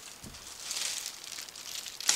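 Clear plastic packaging rustling and crinkling as an item is pulled out of a cardboard box, starting about half a second in and going on irregularly.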